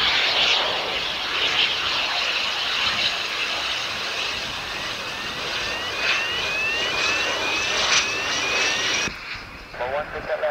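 Royal Air Force Embraer Phenom's twin Pratt & Whitney Canada PW617F turbofans running as the jet touches down and rolls out along the runway: a steady jet hiss and whine. From about halfway, a series of short rising chirps comes about twice a second, and the sound cuts off abruptly near the end, where faint radio speech follows.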